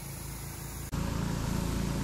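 Steady engine drone of the snow gun's pressure washer and air compressor, with a hiss of spray over it. About a second in, the sound cuts abruptly to a louder take of the same machine noise.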